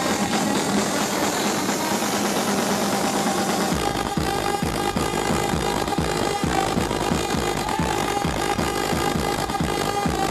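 Loud live techno over a festival sound system, heard from within the crowd. For the first few seconds the bass is cut out, then about four seconds in a steady kick drum drops in at about two beats a second.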